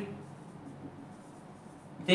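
Faint strokes of a marker pen writing on a whiteboard.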